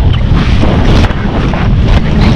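Heavy wind buffeting the camera microphone of a rider at a gallop, a loud steady rush that is deepest at the low end.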